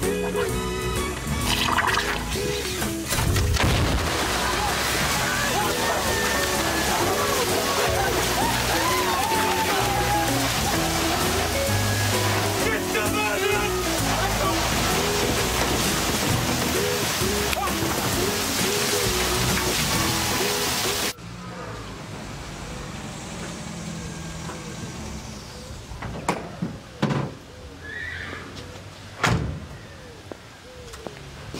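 A shower spraying and splashing hard under a pop song with singing. About two-thirds of the way in, both stop abruptly, leaving a quieter background with a few sharp knocks near the end.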